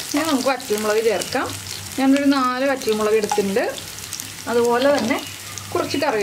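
Shallots, dried red chillies, green chillies and curry leaves sizzling in hot oil in a non-stick frying pan, with a wooden spatula stirring them. A voice talks over it in three stretches and is the loudest sound.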